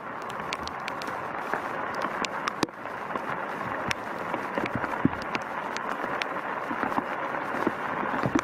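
Rain falling on apple tree leaves: a steady hiss with many scattered sharp drips.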